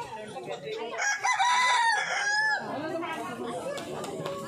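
A rooster crowing once, starting about a second in and lasting about a second and a half, its call held and then falling in pitch at the end.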